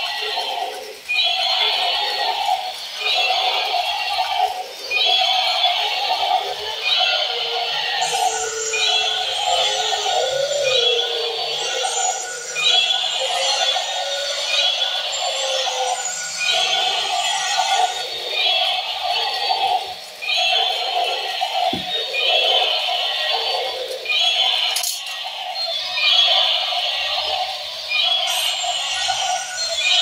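Battery-powered toys playing tinny electronic songs and sound effects through their small speakers, several at once. The sound repeats in a steady pattern about once a second, with a click or two near the end.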